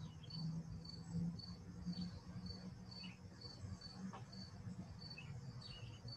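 A cricket chirping steadily and faintly, about two short high chirps a second, over a low hum, picked up through an open microphone on a video call.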